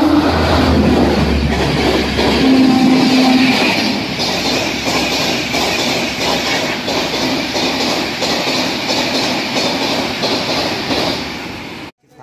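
Indian Railways express train running through the station at speed without stopping: a loud rush of passing coaches with an evenly repeating clickety-clack of wheels over rail joints, fading away near the end.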